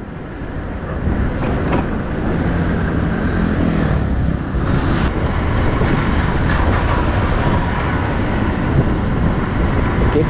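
Motorcycle engine and wind rushing past while riding on the road, building up over the first second or so and then running steadily.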